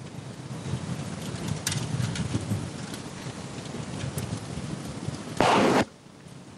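Rumbling outdoor noise with a few scattered crackles, then a loud burst of noise about half a second long near the end that cuts off suddenly.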